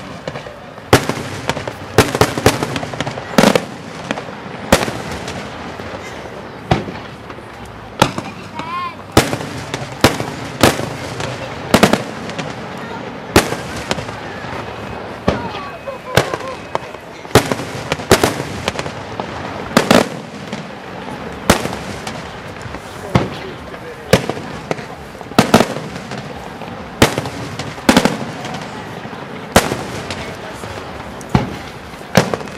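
Aerial firework shells bursting in a steady barrage, a sharp bang about every second or so, with crackling between the bangs.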